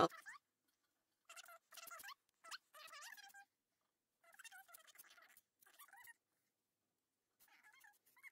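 Faint, short pitched cries that bend up and down in pitch, several in a row, coming in three groups with silence between.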